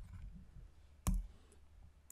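A single sharp click about a second in, the kind made by clicking with a computer pointing device to select an on-screen text box, over a faint low hum.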